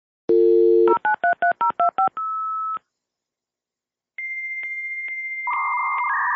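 Dial-up modem connecting. A dial tone is followed by seven touch-tone digits dialed in quick succession and a short single tone. After a pause comes the high answer tone, clicking about twice a second, and near the end the hissing warble of the handshake joins it.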